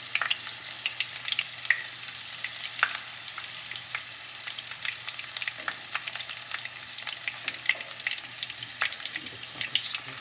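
Egg rolls shallow-frying in hot oil in a pan: a steady sizzle with many small crackling pops, while metal tongs turn them in the pan.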